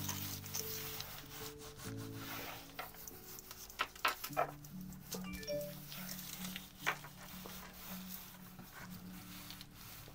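Hands rubbing over thin wet strength tissue laid on a gel printing plate, in irregular strokes, burnishing the paper down to lift the print. Soft background music plays under it.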